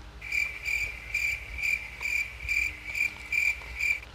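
High, insect-like chirping repeated about twice a second, as from a cricket. It cuts off suddenly at the end.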